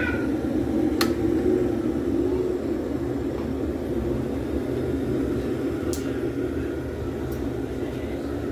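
Glass electric kettle heating water, a steady low rumble that eases slightly toward the end. A sharp click about a second in, and a few fainter clicks later.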